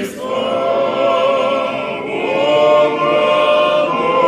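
A choir singing slow, held chords in the manner of Orthodox church chant, the chord shifting every second or two.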